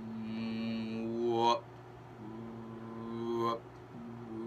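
A man humming two long, steady notes at one pitch, each rising at its end, as a vocal imitation of a mechanical back-and-forth movement.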